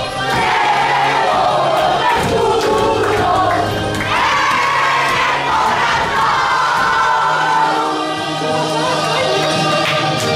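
A group of young women singing and shouting together over music with a steady bass line.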